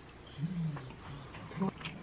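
A person's short, low hum with no words, falling in pitch, about half a second in. Near the end comes a light clink of a metal fork against a plate.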